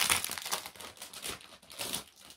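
Crinkly wrapping rustling and crackling as a set of three notebooks is pulled out of its packaging by hand, loudest at the start and again near the end.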